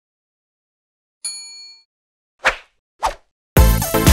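Animated subscribe-button sound effects: a short ringing bell-like ding about a second in, then two quick whooshes. Electronic dance music with a heavy beat starts near the end.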